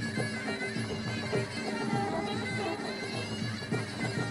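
Muay Thai fight music (sarama): a shrill, nasal reed pipe playing a wailing melody over a quick, steady beat of hand drums.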